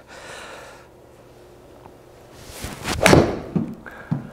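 A full golf swing with an iron: a short swish of the downswing builds into one sharp strike of the clubface on the ball off a hitting mat, about three seconds in, with a brief ring after.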